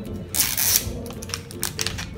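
Plastic wrapping of an LOL Surprise toy ball being peeled open along its tear strip: a burst of crinkling rustle about half a second in, then several small crackles and clicks, over background music.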